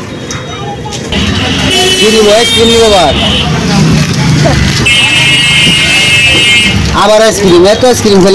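Two long blasts of a vehicle horn, each about two seconds long, over street traffic noise and voices.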